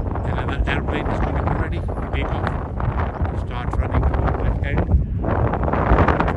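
Strong wind buffeting the microphone: a loud, gusting rumble.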